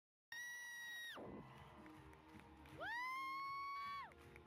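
A woman screaming in excitement from the audience, in two long, high screams. The first is held for about a second and then drops away; the second swoops up about three seconds in and holds to the end. Both sit over crowd cheering.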